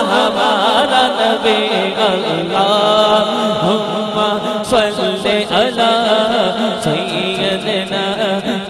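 Naat recitation: a man singing a slow, ornamented devotional melody into a microphone, with long held and wavering notes.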